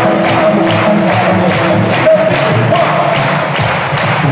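A cappella vocal group singing live through microphones and a PA: sustained harmony lines over a beatboxed beat of about two and a half hits a second.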